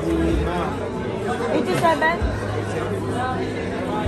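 Chatter of many diners and servers talking at once in a large restaurant dining room, no single voice standing out.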